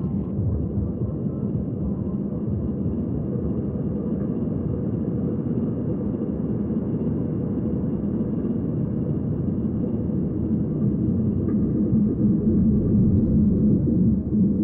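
A dense, steady low rumble with a faint thin high tone above it, growing louder a few seconds before the end.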